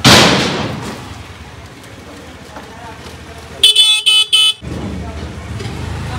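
A motor scooter's horn honking three short times, about two-thirds of the way in. It opens with a loud rush of noise that fades over about a second.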